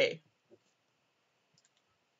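Faint clicks of a pen on paper as writing stops and the pen is lifted away: one soft tap about half a second in and a couple of tiny sharp clicks past the middle, otherwise near silence.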